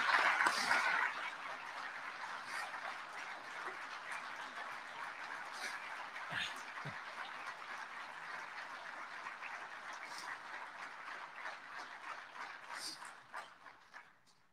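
Large audience applauding, loud in the first second, then steady clapping that dies away just before the end.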